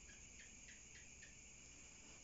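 Faint, steady high-pitched chorus of crickets, with a run of five short chirps, about three a second, in the first second and a half.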